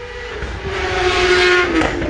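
A motor vehicle passing close by. The road noise swells to a peak about a second and a half in, then drops off, over a steady engine note that falls slightly in pitch.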